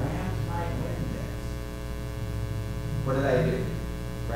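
Steady electrical mains hum with a buzzy row of evenly spaced overtones, running under short, faint fragments of a man's voice near the start and again about three seconds in.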